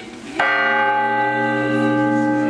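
A church bell struck once about half a second in, its many overtones ringing on steadily afterwards.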